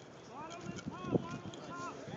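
Distant voices calling and shouting across a softball field, with one short sharp knock about a second in.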